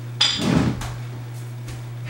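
A brief metallic clink of free weights being knocked, about a quarter second in, with a soft thump of a body settling onto a floor mat; a few faint knocks follow over a steady low hum.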